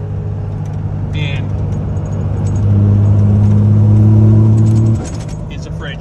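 Steady low drone inside the cab of a 2nd-gen Dodge Cummins diesel pickup at highway speed. About halfway through, a louder, deeper hum made of several steady tones swells in, then cuts off abruptly about a second before the end.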